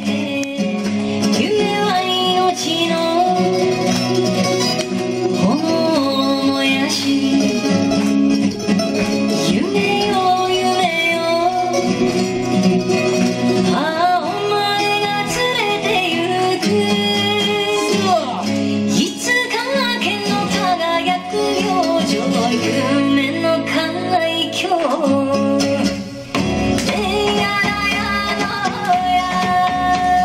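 A song with a singer and guitar accompaniment, played as dance music, with a short dip in level about 26 seconds in.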